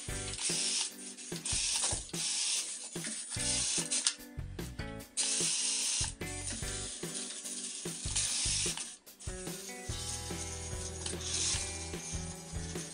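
ZINGO RACING 9115 1:32 micro RC off-road car's small electric motor and plastic gearbox whirring in repeated short bursts of throttle, each a second or less, stopping and starting about eight times.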